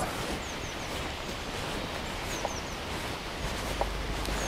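Steady rush of the glen's river, with a few faint bird chirps, short high falling notes in pairs. A low rumble comes in near the end.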